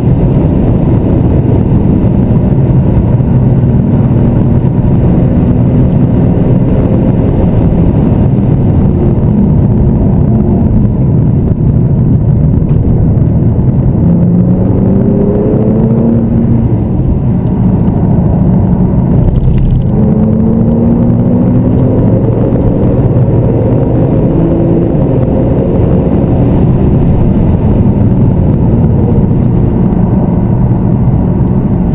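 Porsche 911 Turbo (997)'s twin-turbo flat-six heard from inside the cabin at track speed, under a steady loud rush of road and tyre noise. The engine note rises several times as the car accelerates, with a brief dip about twenty seconds in.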